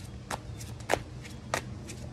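A tarot deck being shuffled by hand: a run of about five sharp, irregular card snaps and slaps.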